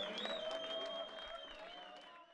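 Audience applauding, many hands clapping, with a long steady high tone held over the claps; the applause fades away toward the end.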